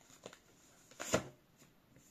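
A tarot deck handled and shuffled by hand: faint card clicks and one short swish of cards about a second in.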